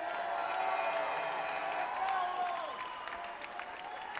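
Arena audience applauding and cheering, with many voices holding cheering calls over steady clapping that eases off slightly toward the end.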